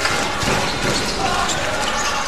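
Basketball being dribbled on a hardwood arena floor, a few low thuds, over a steady wash of crowd noise and voices.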